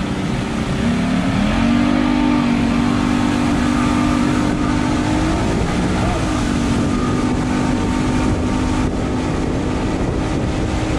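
Mercury 200 two-stroke outboard running with the boat under way. Its pitch climbs about a second in and holds steady, rises and dips briefly around the middle, then settles. Water and wind rush run under it.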